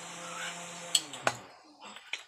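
Steady low hum of a 12-volt electric fan motor running on a home-made speed controller, stopping with two sharp clicks about a second in; a few faint clicks follow.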